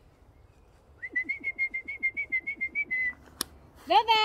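A person whistling one steady high note with a fast flutter, about seven pulses a second, for about two seconds. A sharp click follows, and near the end a loud voice-like call starts, rising in pitch.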